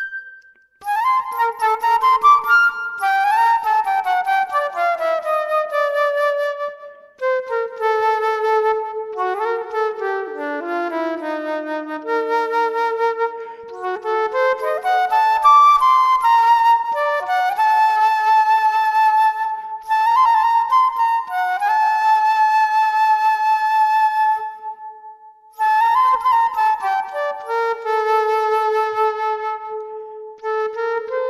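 Flute improvisation in a slow, free melody, two lines often sounding together, notes sliding down in pitch and overlapping. A short pause comes about half a second in, and another near the end.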